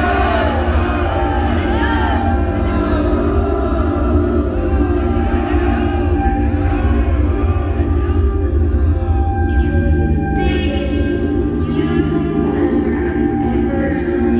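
Electronic music: a deep sustained drone under layered held tones, with many short arching pitch sweeps in the first half. Around ten seconds in, a brighter cluster of held tones comes in.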